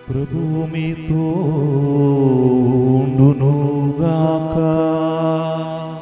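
Liturgical chant sung over a steady held keyboard drone; it begins abruptly, and the melodic line slides and wavers from about a second in.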